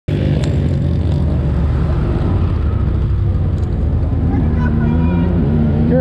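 ATV engine running steadily at idle, with a man talking over it in the latter part.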